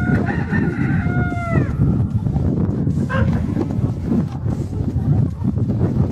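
A rooster crowing once at the start, a call of about a second and a half that falls in pitch at its end, with a short second call about three seconds in, over continuous loud low-pitched background noise.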